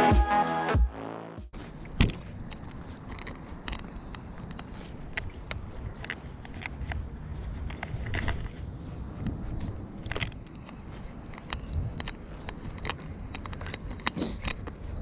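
Background music cuts off about a second and a half in. It gives way to a low outdoor rustle with scattered faint clicks and knocks, the handling noise of an angler working a baitcasting rod and reel.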